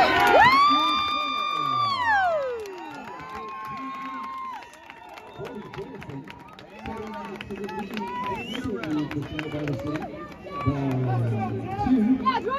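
A game horn sounds loudly for about two seconds, then its pitch slides down as it dies away. Crowd chatter and some cheering follow.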